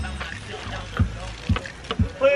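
Music with a steady thumping bass beat, about two beats a second, under faint voices.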